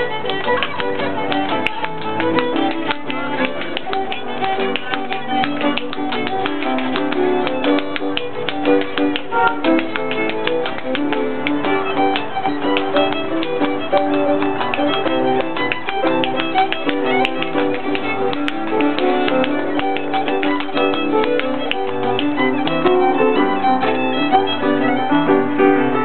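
A lively Irish dance tune played live on fiddle with piano, with percussive dance steps tapping out quick rhythms on the floor throughout.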